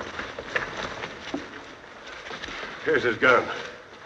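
Brief lines of men's speech in film dialogue, with a few small knocks and rustles between them.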